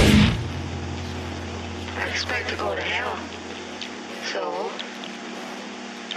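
A heavy deathcore track cuts off abruptly. A low steady hum is left ringing and fades out over the next few seconds, while a man's voice from a spoken-word sample says a few words.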